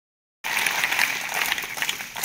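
A large group of children clapping together, many overlapping claps forming a dense applause that starts about half a second in.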